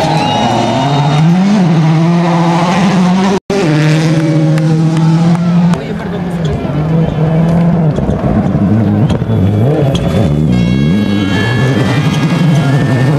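World Rally Cars on a gravel stage, their engines revving hard and dropping back through gear changes. The sound comes in short clips joined by abrupt cuts, with a brief dropout about three and a half seconds in.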